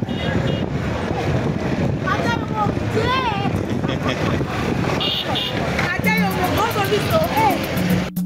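Busy street-market hubbub with passing motor traffic, and a voice calling out close by with strongly rising and falling pitch. About six seconds in, music with a clicking percussive beat starts over it.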